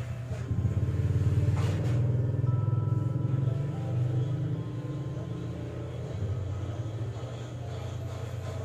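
A steady low rumble fills the whole stretch, with a few faint steady tones above it from a couple of seconds in.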